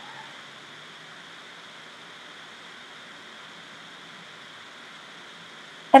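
Steady faint hiss of room tone and recording noise, with no distinct sound standing out.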